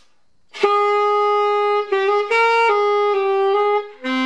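Saxophone playing a short, smooth phrase of about five sustained notes, starting about half a second in. The player keeps his body relaxed, his remedy for notes flipping up into the upper octave.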